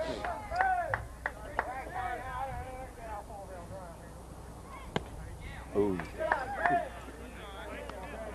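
Voices calling out across a baseball field, in short bursts near the start and again about six seconds in, with a single sharp pop about five seconds in.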